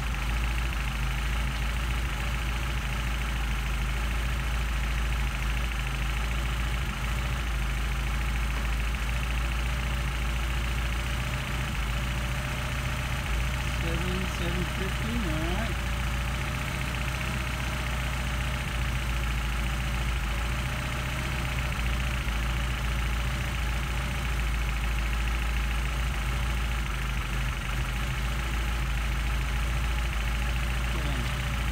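Mercedes-Benz 190SL four-cylinder engine idling steadily at about 700 rpm on its twin Solex carburetors, with the idle just set.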